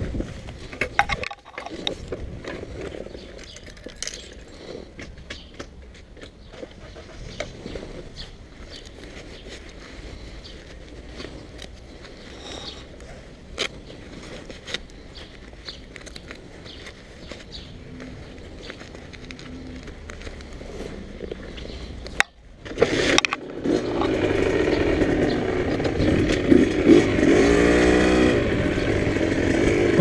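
Gloves and clothing rustle with small handling clicks on a small supermoto motorcycle. About 23 seconds in, its engine starts and then runs noticeably louder, its pitch rising and falling with the throttle.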